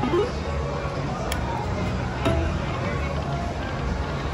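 Lightning Link 'Tiki Fire' slot machine playing short musical game tones as its reels spin and stop, with two sharp clicks about one and two seconds in, over a steady low hum of casino background noise.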